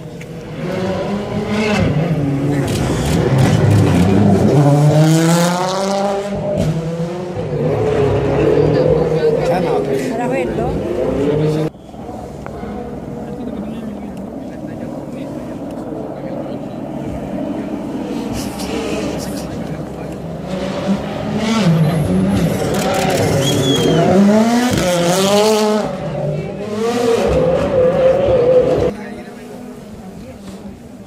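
Rally car engine revving hard, its pitch rising again and again through the gears. Between the revving it runs steadier, dropping suddenly about twelve seconds in. Another spell of hard revving comes about twenty seconds in and cuts off near the end.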